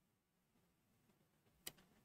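Near silence: room tone, with one brief faint click near the end.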